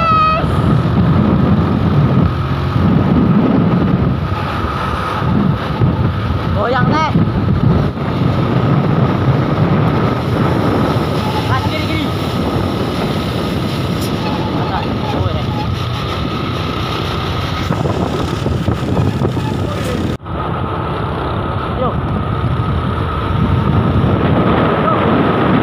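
Road noise from moving traffic and a truck engine, with wind buffeting the microphone. The sound drops out abruptly about twenty seconds in, then carries on.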